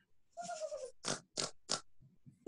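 A girl imitating a crying pig, heard through a video call: one drawn-out squeal falling in pitch, then three short, quick grunts.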